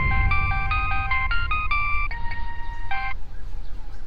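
Mobile phone ringtone: a melody of about a dozen short electronic notes, stopping about three seconds in as the call is answered. A low background rumble runs underneath.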